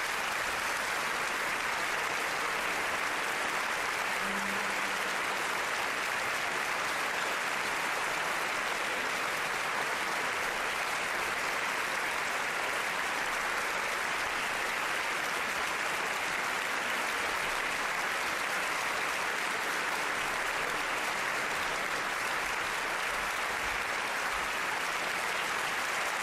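Large concert-hall audience applauding, a dense and steady ovation that begins just after the orchestra's final chord.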